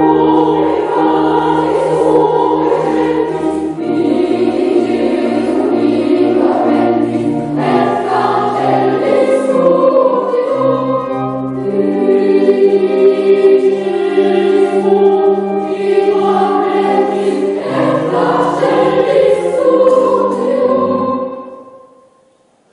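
Children's choir singing in a church, with sustained low accompaniment notes underneath. The music starts suddenly and fades out just before the end.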